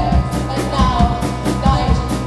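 Indie rock band playing live: a woman singing a wavering melody into a microphone over a steady drum beat, bass and keyboards.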